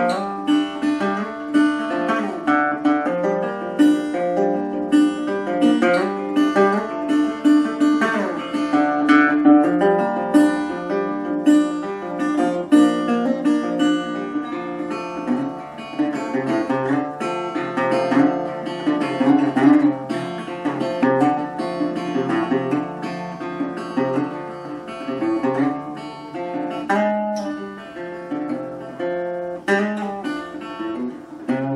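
Music led by acoustic guitar, a quick run of picked notes with some strumming.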